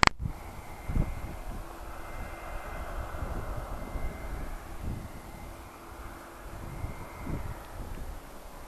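A distant engine drone with a faint steady whine, under gusts of wind buffeting the microphone; a sharp click at the very start.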